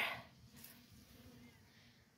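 Near silence: a faint outdoor background just after a spoken word trails off, with one faint tick.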